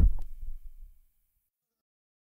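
The end of a hip-hop track: after the music stops, a low bass tail dies away over about a second, then silence.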